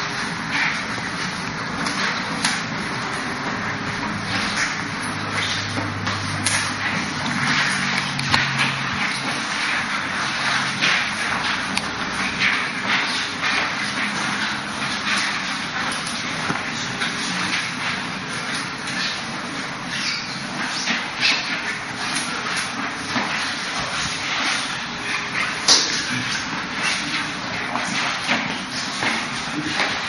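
Two people sparring hand to hand: a dense, irregular run of short slaps and scuffs from forearms and hands striking and blocking, with clothing rustle and shuffling feet, over steady background noise.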